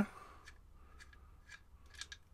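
A few faint, scattered small clicks of metal parts being handled as a rebuildable RBA bridge is unscrewed from a box mod's threaded 510 connector.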